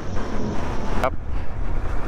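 Yamaha Ténéré 700 parallel-twin motorcycle engine running at low speed, under heavy wind buffeting on the helmet-mounted microphone.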